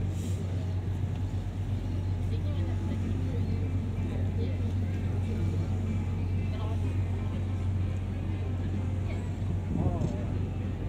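Passenger ferry's engine running steadily under way, a constant low drone, with faint voices of people on board in the background.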